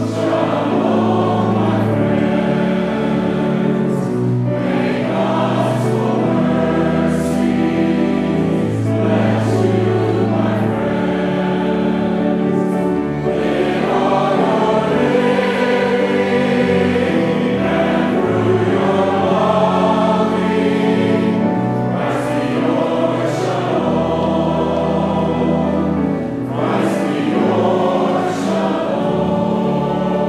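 Church choir singing in parts, with long, steady bass notes from a pipe organ underneath.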